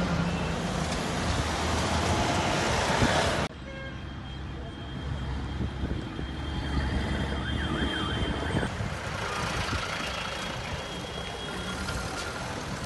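An army jeep's engine running as it drives through a shallow stream, with a loud rush of splashing water, cut off abruptly about three and a half seconds in. After that, vehicle engines hum more quietly, and a fast up-and-down siren wail sounds briefly around the middle.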